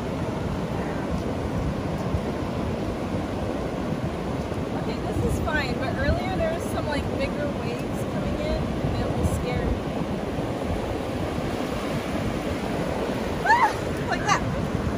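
Ocean surf breaking and washing up onto a sandy beach, a steady rushing noise throughout.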